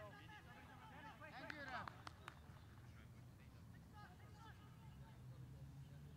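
Faint, distant voices of soccer players calling out on the field, with a couple of sharp knocks about two seconds in, over a low steady rumble.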